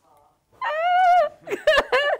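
A woman's high-pitched, drawn-out squeal of under a second, then a few short vocal sounds near the end.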